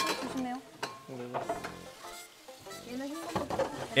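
Dishes and kitchen utensils clinking and clattering during dishwashing, a scatter of sharp clicks, with soft background music and brief quiet voices underneath.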